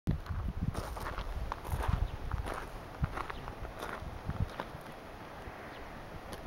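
Irregular light knocks and scuffs, a few each second, over an uneven low rumble.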